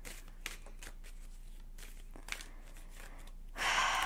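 Faint, scattered light clicks and rustles of oracle cards being handled as a card is drawn from the deck, with a louder breath near the end.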